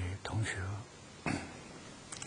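A man speaking Mandarin, addressing his listeners as 諸位同學 ("dear fellow students"): speech only.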